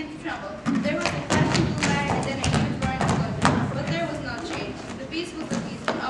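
A quick run of thumps and knocks on a stage floor, densest in the first half, with voices over them.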